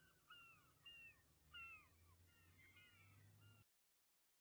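Faint birds calling, a run of short calls that each drop in pitch, several a second, then the sound cuts off suddenly near the end.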